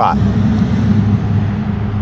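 Steady road traffic noise: a continuous low hum with an even hiss over it.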